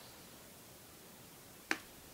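A single sharp tap near the end, the oil pastel stick touching down on the drawing board, over quiet room tone.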